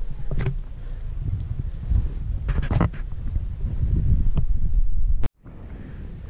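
Wind buffeting the camera's microphone, a loud, gusting low rumble with a few brief knocks of handling. It cuts off suddenly about five seconds in.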